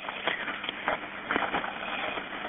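Rustling hiss on a telephone line, with scattered soft knocks, as the handset is moved about during an emergency call.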